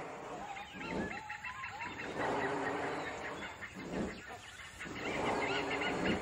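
Birds calling in forest, several overlapping calls, with short rising-and-falling whistled notes about a second in and louder spells about two and five seconds in.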